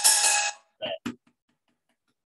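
A cymbal struck once with a drumstick, its metallic ring cut off abruptly about half a second in.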